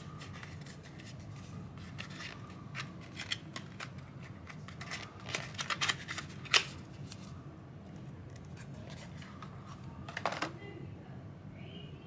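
A small paperboard soap box handled and opened by hand: scattered light clicks and rustles of card as the end flap is worked open, a louder click a little past halfway, and a short burst of rustling near the end as the bar comes out.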